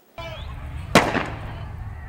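A single sharp bang about a second in, tailing off quickly, over a steady low rumble from the microphone.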